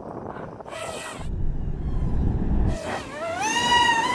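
Deep rumble of tyres on a wet road surface as a vehicle sets off, then a high electric motor whine rising steadily in pitch, with several overtones, over the last second as it accelerates.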